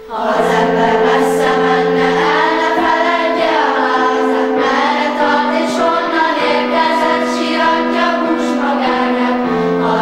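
A children's choir, mostly young girls, singing a song together, coming in loudly right at the start.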